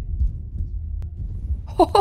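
A low, pulsing rumble from a film's action-scene soundtrack, with nothing higher in pitch above it; a woman's short exclamation comes in near the end.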